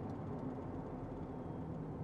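Steady engine and road noise inside a moving truck's cab, a low even drone with a faint hum.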